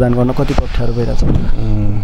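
A man speaking in Nepali, in bursts of talk with short pauses.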